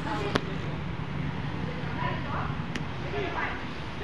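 Indistinct voices of people talking in the background over a steady noise, with two sharp knocks: a loud one just after the start and a fainter one a little before three seconds in.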